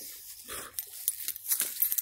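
Footsteps and rustling through grassy forest undergrowth, with scattered clicks and handling noise, and a brief soft sound about half a second in.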